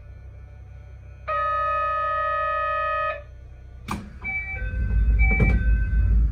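Departure signals heard from inside a narrow-gauge commuter train standing at a station. A steady electronic buzzer tone sounds for about two seconds, then a click. After it a door chime alternates high and low notes over a low rumble as the sliding doors close.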